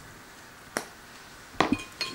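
A light click, then a couple of sharp clinks near the end as a metal fork knocks against a ceramic bowl of beaten eggs.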